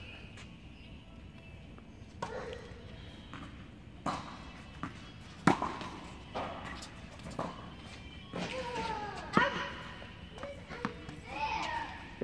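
Tennis balls being struck by rackets and bouncing on an indoor hard court during a rally: a series of sharp, irregularly spaced pops, the loudest about four, five and a half and nine and a half seconds in.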